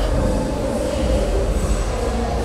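Loud, steady rumbling noise with a low hum throughout, with no speech or music.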